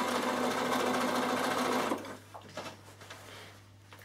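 Bernina sewing machine stitching steadily through layers of fabric, then stopping about halfway through.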